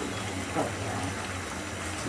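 Raw mango and jaggery chutney simmering in a pan over a gas flame: a steady low bubbling and hiss as the thickening mixture cooks.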